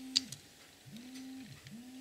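A dove cooing: three low, smooth coos, each gliding up, holding and falling away. A sharp click sounds just after the start, from the die-cast model truck being handled.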